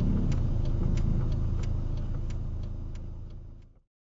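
A car's turn-signal or hazard indicator ticking steadily, about three clicks a second, over the low hum of the idling engine heard inside the cabin. It fades out and cuts off shortly before the end.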